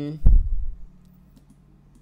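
A single strong low thump a quarter of a second in, then a couple of faint computer mouse clicks near the middle.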